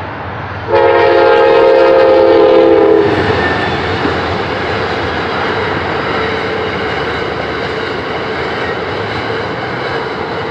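Passenger train sounding its horn: one loud blast of several tones at once, starting about a second in and lasting a little over two seconds, then the steady noise of the train's cars rolling over the crossing.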